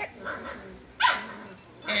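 A four-week-old standard schnauzer puppy gives one short, high-pitched bark about a second in.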